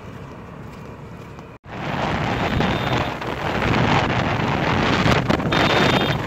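Loud, rough wind noise buffeting the microphone, starting suddenly about two seconds in after a short stretch of quieter steady background.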